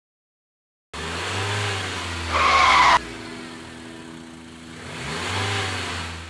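Outro logo sound effect: an engine-like running sound that cuts in suddenly about a second in, with a loud, higher-pitched burst in the middle that stops abruptly, then swells again and fades away near the end.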